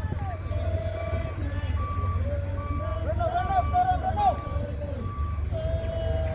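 Truck engine running with a low steady drone while a reversing beeper gives a short beep a little faster than once a second. High voices call out over it, loudest around the middle.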